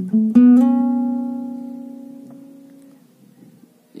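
Cutaway acoustic guitar playing single-string lead notes: a couple of quick picked notes, then a note plucked and slid up a fret about half a second in. It rings and fades away slowly over about two and a half seconds.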